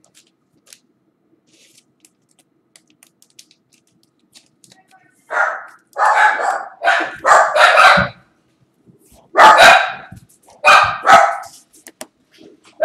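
A dog barking loudly, a run of short barks in three bunches starting about five seconds in.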